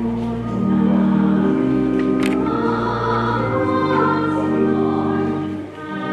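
Choir singing a slow hymn in long held notes, with a brief click about two seconds in.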